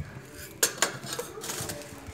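Metal clinks and knocks on a cast-iron pan where coriander seeds are dry-roasting: two sharp clinks just after half a second in, then a few lighter knocks.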